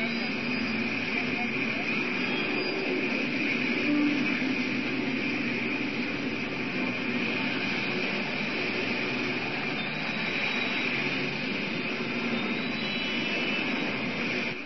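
Steady outdoor street noise: a continuous roar of traffic with indistinct voices in the background.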